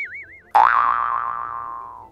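Cartoon-style comedy boing sound effects. A wobbling, warbling tone fades out about half a second in. Then a sudden twanging boing rises briefly, slowly falls in pitch and dies away.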